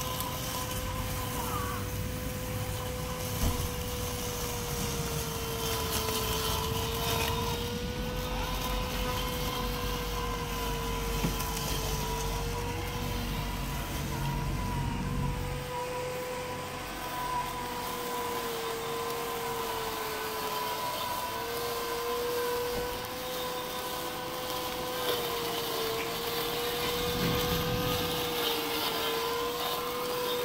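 Ambrogio L60 robotic lawnmower running on the lawn with its blade engaged: a steady motor whine whose pitch wavers and dips briefly now and then as it mows.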